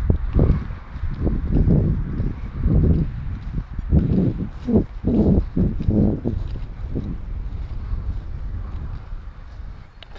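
Footsteps thudding through grass, roughly one or two a second, over a low rumble of wind on the microphone. The steps grow fainter and sparser in the last few seconds.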